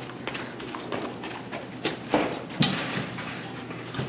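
Quick footsteps running on a hard tiled hallway floor, irregular knocks, with a couple of louder thumps a little past two seconds in.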